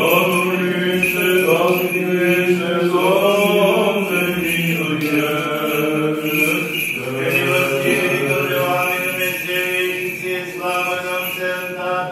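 Orthodox church chant: voices singing slow, long-held notes, a steady drone note under a melody that slides between pitches.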